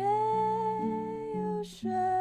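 A woman's voice sings softly over an acoustic guitar. She swoops up into one long held note that lasts about a second and a half, breaks off, and starts a new note near the end, while the guitar sounds its chords underneath.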